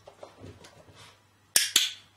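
Dog-training clicker clicked once, a sharp double click (press and release) about a second and a half in, marking the puppy for standing in the box.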